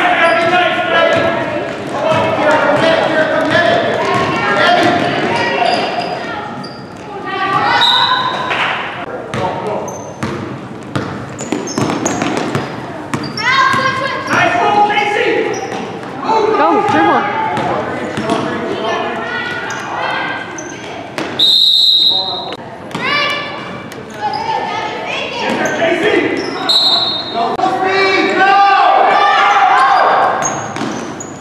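A basketball being dribbled and bouncing on a hardwood gym floor, with shouting voices echoing through the large gym. A referee's whistle sounds about two-thirds of the way through.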